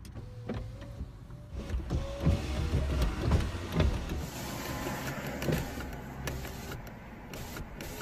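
Low steady rumble inside a car cabin, with scattered small clicks and knocks and a faint thin hum in the first couple of seconds.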